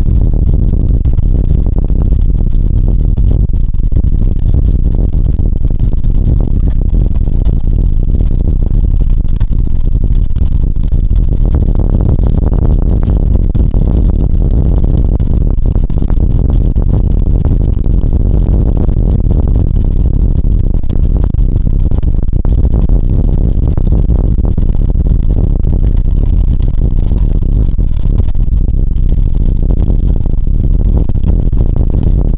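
Vintage BMT BU wooden gate car running along elevated/open-cut subway tracks, heard from aboard at its front end: a loud, steady rumble of the wheels on the rails with fine clicking through it, swelling for a few seconds around the middle.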